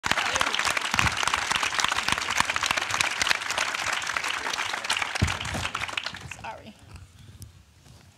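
Audience applauding: dense, steady clapping that dies away about six seconds in.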